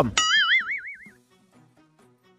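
A cartoon-style 'boing' sound effect: a springy tone that wobbles rapidly up and down in pitch for about a second and then dies away.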